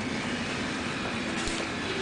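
Steady rumbling background noise of a large space, without distinct events.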